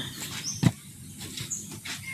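Handling noise: a single sharp knock about two-thirds of a second in as the battery pack of 18650 cells is moved, with a few faint, short bird chirps in the background.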